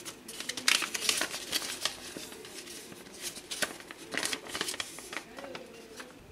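A folded paper instruction sheet being unfolded and handled, crinkling and rustling in irregular crackles.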